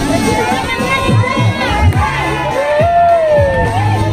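A parade crowd cheering and shouting over one another, many voices at once, with one long drawn-out call about three seconds in.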